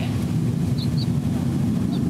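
Blue Origin New Shepard rocket's BE-3 engine burning during powered ascent: a steady, unbroken low rumble.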